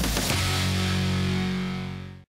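Short rock-style music sting: a few quick hits, then a held chord that fades out near the end.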